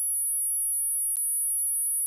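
A single steady, very high-pitched electronic tone held unbroken, with a faint click about a second in.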